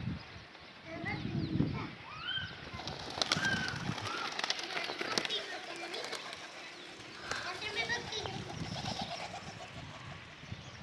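Pigeons in a yard: short rising bird calls go on throughout, with a run of sharp wing claps and flapping around the middle as a pigeon flies up.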